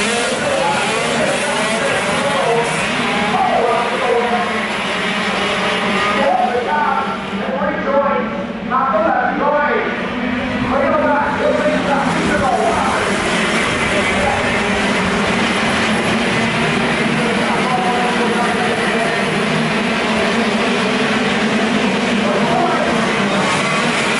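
A pack of KZ2 shifter karts, 125cc two-stroke engines, running together as they circulate the track. Voices talk over the engines through the first half or so.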